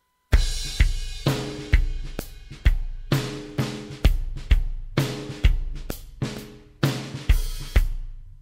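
Programmed drum-kit beat from a Toontrack EZdrummer virtual drum plugin played back from the sequencer, in a triplet-feel groove at 116 BPM. It starts about a third of a second in and hits land about twice a second, each ringing out before the next, with the last ones fading near the end.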